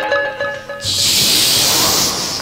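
Harmonium holding a few sustained notes with the tabla silent, then about a second in a loud hiss that lasts over a second.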